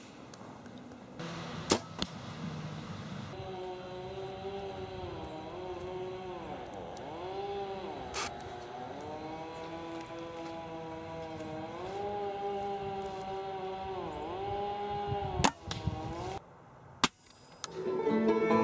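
A few sharp snaps of arrows shot from a bow at small game, spread through the clip. Behind them is a steady pitched hum that dips in pitch and recovers several times, then stops shortly before the end.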